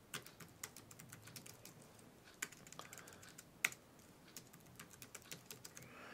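Typing on a Logitech external keyboard: faint, irregular key clicks, with two louder key strikes a little past the middle.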